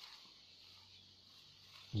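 Near silence: faint background noise with a faint low steady hum.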